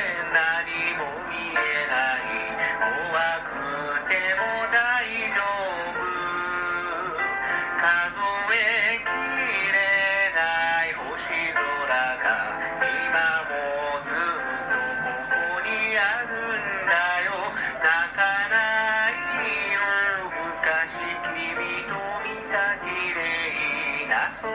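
A male voice singing a Japanese pop song over a backing track, the melody continuing throughout.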